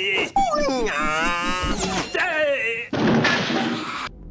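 A man's voice making wordless wailing and whimpering cries that slide up and down in pitch, followed by a burst of hissing noise for the last second.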